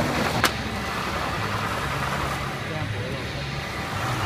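Powder tray automatic filling and sealing machine (Seal Pack SP-3503B) and its slat conveyor running with a steady hum, with a single sharp click about half a second in.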